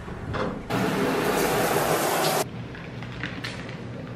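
Shower running from an overhead rain shower head: a steady hiss of spraying water lasting a little under two seconds, starting and stopping abruptly.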